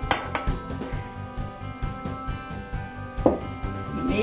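Background music with two light glass clinks, one at the start and a sharper one about three seconds in: a small blue glass bowl knocking as it is handled and then set down among other glass bowls.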